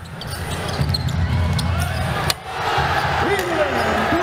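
Basketball game sound: a ball dribbled on the hardwood court amid arena noise, with a sharp click a little past two seconds in and voices calling out near the end.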